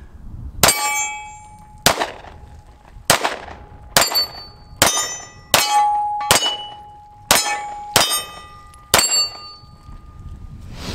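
Ruger American Compact striker-fired pistol fired about ten times at steel targets, roughly one shot a second. Most shots are followed by a short ringing clang from a steel plate being hit.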